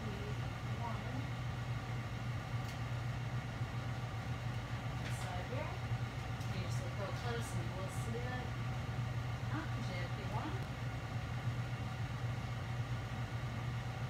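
A steady low machine hum, with faint background voices and a few light clicks of small parts being handled about five to eight seconds in.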